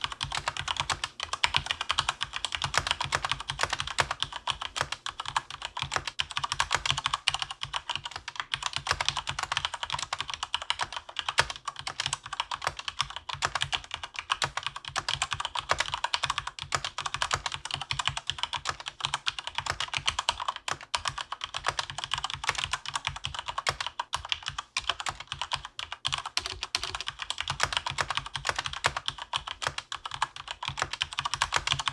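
Rapid, continuous typing on a keyboard: a dense stream of key clicks, several per second, going on without a break.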